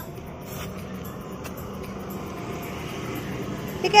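Scooter's front tyre being filled from a compressor air hose: a steady hiss with a faint hum under it.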